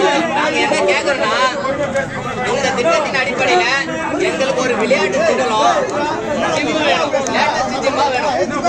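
Speech only: several men talking over one another in Tamil, a crowd's chatter around a speaker.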